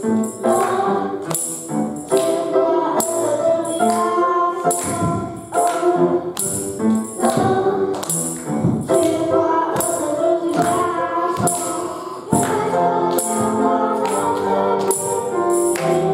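Young children's choir singing a hymn in Taiwanese into microphones, over a musical accompaniment with a bright jingling beat about twice a second.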